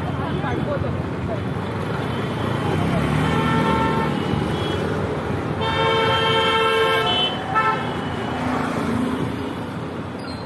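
Street traffic noise with steady engine and road sound. A vehicle horn gives a faint short toot about three and a half seconds in, a long, loud honk from about six to seven seconds, then a short honk right after it.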